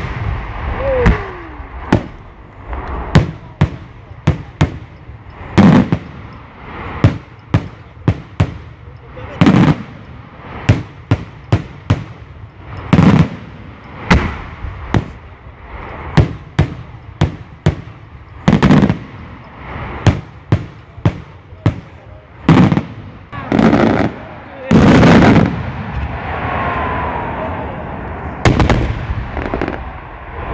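Daylight aerial firework shells bursting overhead in an irregular series of sharp, loud bangs, some single and some in quick clusters. About 25 seconds in, the reports run together for about a second.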